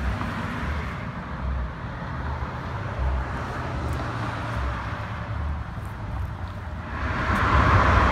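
Street traffic noise from passing cars: a steady tyre and road hiss with an uneven low rumble, growing louder near the end.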